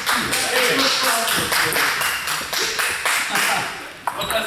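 Rapid, irregular clicking of table tennis balls striking bats and tables, from several games at once, under a murmur of voices.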